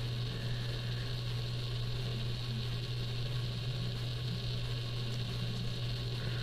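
Steady low electrical hum with a faint hiss under it, unchanging throughout, with no other sounds.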